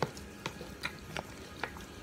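Metal fork stirring and mashing tuna salad with chopped egg in a small bowl, its tines clicking lightly against the bowl about twice a second.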